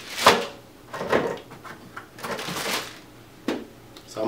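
Handling noises from picking up and moving equipment: a sharp knock just after the start, then a few softer knocks, a short scraping rustle, and a click near the end.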